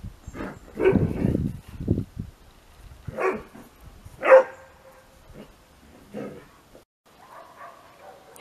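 A dog barking, about six short separate barks, the loudest a little past the middle.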